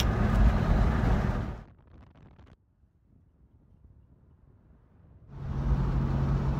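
Car cabin noise while driving: a steady rumble of road and engine. It cuts out to near silence about a second and a half in, for roughly three and a half seconds, then comes back with a steady low engine hum.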